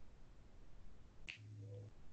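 Quiet room tone with a single sharp click a little over a second in, followed by a brief low hum.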